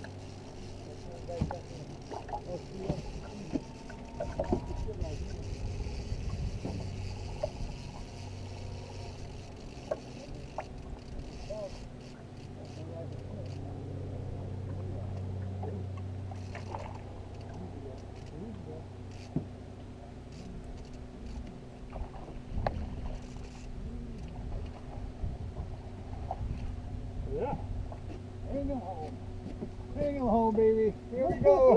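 Small outboard motor running steadily at low speed, giving a constant low hum, with faint voices and a few sharp knocks on the boat.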